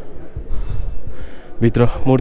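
A man breathing hard in rough puffs close to the microphone, then his voice starting near the end.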